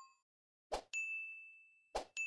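Subscribe-animation sound effects: a short click, then a bright notification-bell ding that rings out for about half a second, and another click near the end.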